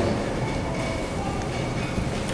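Steady background room noise with a faint high steady tone running through it, and no other event.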